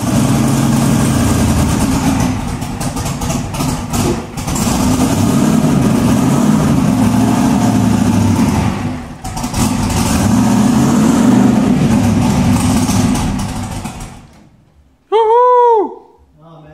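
Twin-turbocharged V8 drag-car engine running loud and rough, dipping briefly twice, then dying away near the end. A short tone that rises and falls in pitch follows.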